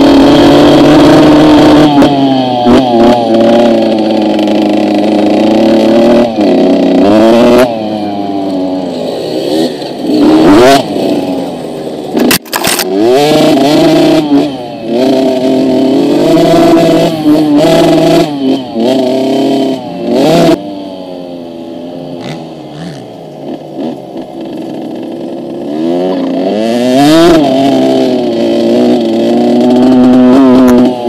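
Kids' minicross motorcycle engine being ridden hard, its pitch rising and falling as the throttle is opened and shut, with a few sudden drops. It runs quieter and lower for a few seconds past the middle, then climbs again near the end.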